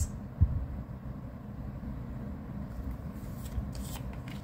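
Steady low background hum, with one short thump about half a second in and faint clicks of tarot cards being laid on a mesh mat near the end.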